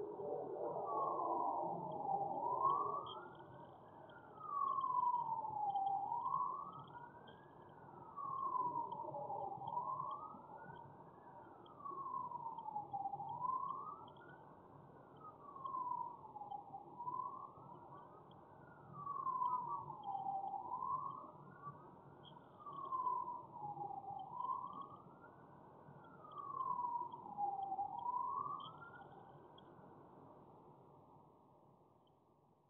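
Emergency-vehicle siren on a slow wail, rising and falling in pitch about every three and a half seconds. Faint high chirping runs over it.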